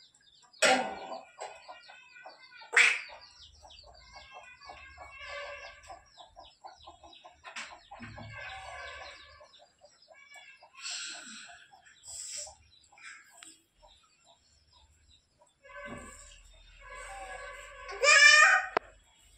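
Chickens clucking: two louder calls in the first three seconds, then a long run of quick, evenly spaced clucks, with a few more calls later on.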